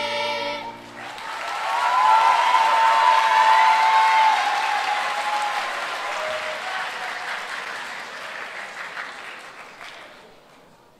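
A children's choir's held closing chord stops under a second in, then an audience applauds, swelling quickly and slowly fading away. A few voices call out over the clapping near its loudest.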